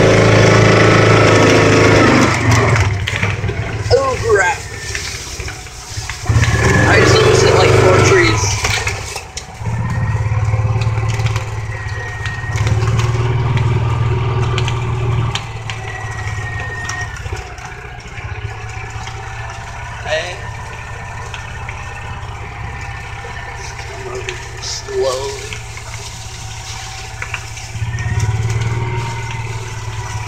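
A small ride-on vehicle's motor running as it is driven slowly over grass, a steady low hum with a whine above it that grows louder in several stretches and eases back in between.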